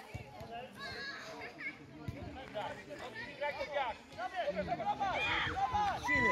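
Several voices shouting and calling across the pitch, overlapping and too distant to make out, growing busier in the second half.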